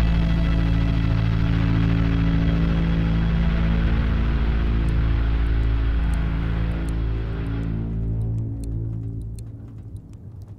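Dark, ambient film-score music: a sustained low droning chord with a hazy wash above it, fading out over the last two seconds.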